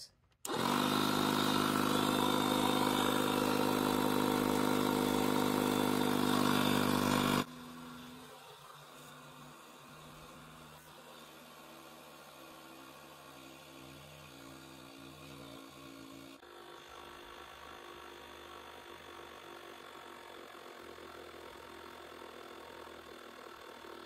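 A FORTEM 12-volt portable tire inflator's compressor switches on about half a second in and runs loudly and steadily, pumping up a nearly flat car tire. About seven seconds in the sound drops abruptly to a much fainter steady hum, which holds to the end.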